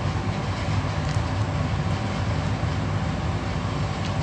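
Steady low rumble with a fainter hiss above it, holding at an even level with no distinct events.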